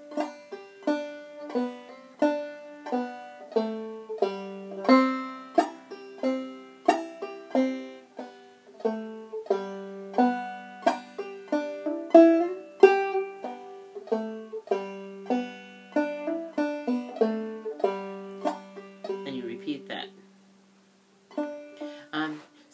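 Five-string banjo played clawhammer style, a simple tune in G picked out slowly, about two notes a second, each note ringing and dying away. The playing breaks off for a moment near the end and then starts again.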